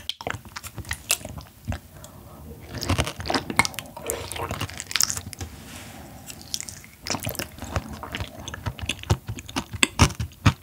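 Close-miked chewing and biting of soft yellow stingray liver: a run of small mouth clicks and smacks, with a fresh bite taken partway through.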